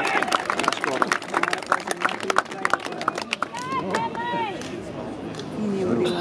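Scattered hand-clapping from players and a small crowd, with a few voices calling out; the clapping thins out and dies away after about three or four seconds.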